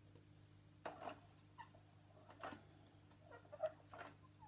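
Near silence with a few faint clicks and rustles of a plastic teaching clock being handled as its hands are turned, over a low steady room hum.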